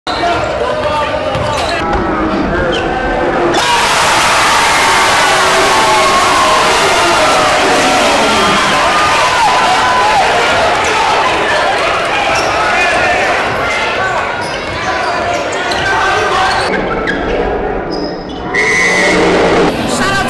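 Gym crowd noise at a high school basketball game, with many voices shouting and cheering and a basketball bouncing on the hardwood floor. The crowd gets much louder and fuller a few seconds in, then eases off near the end.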